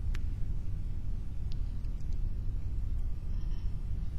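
Steady low rumble with no speech, broken by a few faint clicks.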